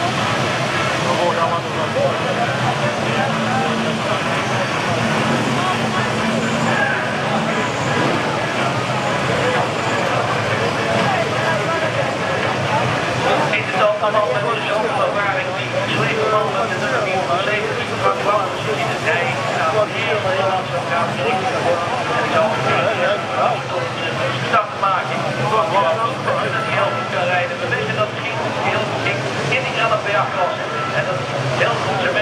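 A pack of F1 stock cars running their V8 engines together as they roll round in formation for a restart, with a voice talking over them the whole time.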